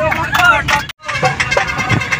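A group of young men singing and shouting a Bihu song together, several voices at once, over the steady rumble of a moving bus. The sound breaks off for an instant about halfway through.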